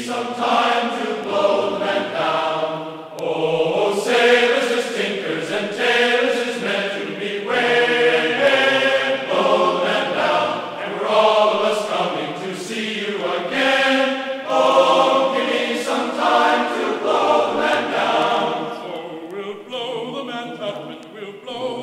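A choir singing a classical choral piece in sustained chords that change every second or so.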